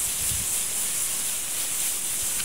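Butter sizzling with a steady hiss as a stick of it is rubbed across the hot steel top of a Blackstone gas griddle.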